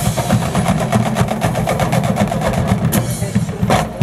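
Marching band percussion playing fast, continuous drumming over a sustained low tone, with a few heavier accents near the end.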